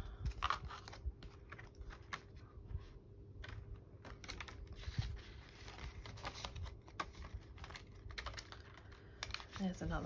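Plastic binder sleeves, a laminated card and banknotes being handled and slid into a pocket: irregular light crinkling, rustling and small clicks, over a faint steady hum.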